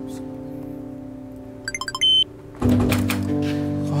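Electronic door keypad lock: about six quick key-press beeps, then one longer, louder high beep, the lock's tone rejecting a wrong code. Background music plays underneath and swells near the end.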